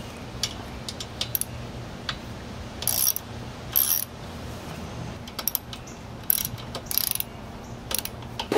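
Socket ratchet clicking in short runs, with scattered single clicks, as a 10 mm exhaust nut is undone on a Puch E50 moped engine.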